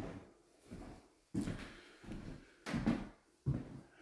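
Four soft thumps about a second apart, each dying away quickly in a bare, echoing room.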